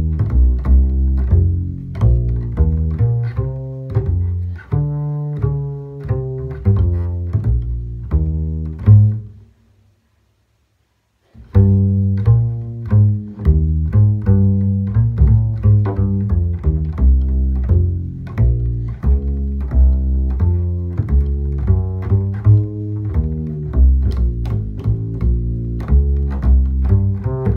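Solo double bass plucked pizzicato, walking a swing bass line with a steady stream of notes at a medium-up tempo. The line stops for about two seconds near the middle, then picks up again.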